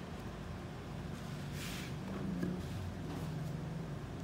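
Steady low hum with a brief scrape of hand and tool on the excavator swing motor's housing a little under halfway through.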